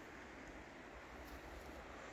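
Faint, steady murmur of a shallow mountain river running low over stones, with a light low rumble of wind on the microphone. The water is low, so the river makes little noise.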